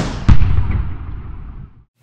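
Edited-in transition sound effect: a rising whoosh that ends in a heavy low boom about a quarter of a second in, then a rumbling, hissing tail that fades out over about a second and a half.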